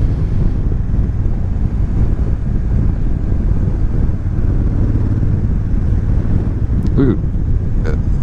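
Honda Africa Twin DCT's parallel-twin engine running steadily at a cruise, with wind rushing on the microphone.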